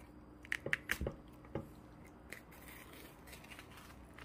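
Crisp, blistered skin of a roasted lechon pork belly crackling under the fingers as its cooking string is pulled off: a handful of sharp crunches in the first two seconds or so, then a few faint ones.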